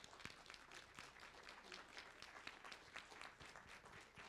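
Faint applause: many hands clapping together in a steady patter.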